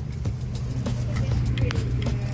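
Guinea pig hay bedding rustling with scattered light clicks as it is handled, over a steady low hum. A brief high squeak comes near the end.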